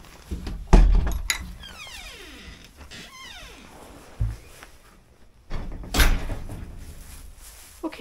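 Wooden shed door being opened and shut: several knocks and thuds, the first the loudest, and a long creak falling in pitch after the second.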